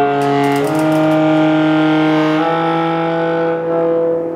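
Alto saxophone with piano playing a contemporary piece: a loud, sustained, rough-edged sound of several pitches at once that moves to new pitches twice, about half a second in and about two and a half seconds in.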